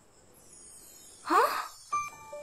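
A woman's short 'ah?' that rises in pitch, a sound of puzzlement, about a second and a half in, after a nearly silent start.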